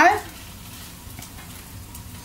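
A steady low hiss with a few faint, soft clicks as tongs set fried sausage slices onto salad in a glass bowl.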